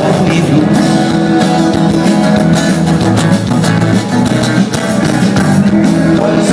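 Rock band playing live at full volume: electric guitars and drums, heard from among the audience in a large hall.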